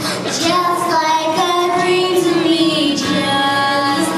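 A young girl singing into a handheld microphone, holding long, drawn-out notes.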